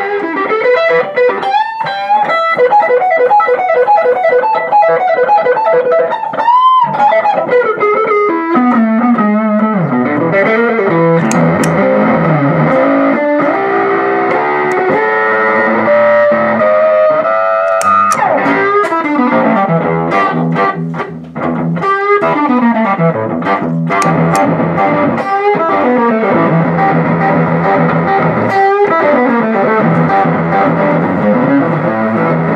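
Electric guitar played through a Fender The Trapper dual fuzz pedal, with the second fuzz switched on. It plays sustained fuzzed notes that waver with vibrato and slide in pitch, and the level dips briefly about two-thirds of the way in.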